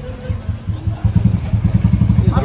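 A motor vehicle engine running close by: a rapid low pulsing that grows louder about a second in.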